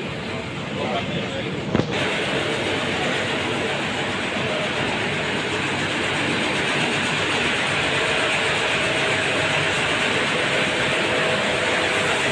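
Bottling-line machinery running on a factory floor: a steady, even mechanical din with a faint constant hum under it. It starts abruptly with a click about two seconds in.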